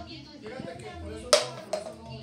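An empty plastic water bottle strikes the tile floor with one sharp clack just past halfway, then gives a smaller knock as it tips over: a missed bottle flip.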